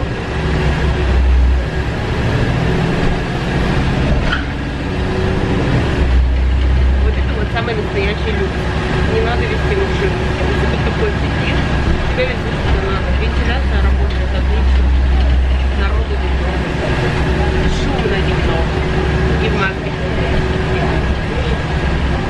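Inside a moving city bus: steady engine and road rumble with a constant hum, the low rumble swelling and easing several times.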